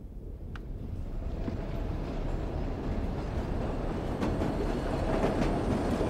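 A low rumble that grows steadily louder, with a few faint clicks through it.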